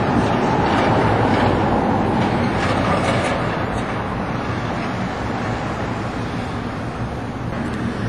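Street traffic: a steady rush of passing cars' tyre and engine noise, loudest in the first few seconds and easing slightly after.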